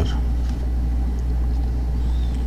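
Steady low-pitched hum with no speech: the background noise of a voice-over recording made at a computer.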